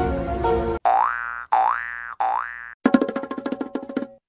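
Cartoon comedy sound effects: a music track cuts off just under a second in, then three springy boing tones follow, each sliding up in pitch, and after them comes a fast rattling run of clicky notes.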